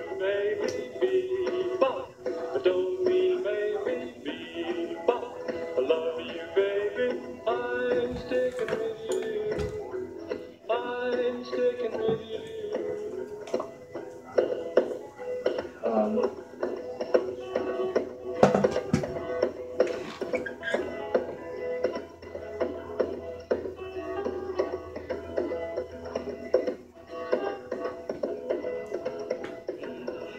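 A song with singing playing on an AM radio station, heard through the radio's small speaker.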